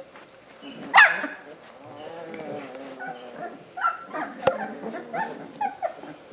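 Basset hound puppies yelping and yipping as they play and nip at each other. There is a sharp, loud yelp falling in pitch about a second in, a lower drawn-out cry after it, then a run of short, high yips near the end.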